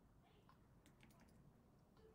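Near silence: faint room tone with a quick cluster of a few light clicks about a second in, typical of computer input while dragging a graphic.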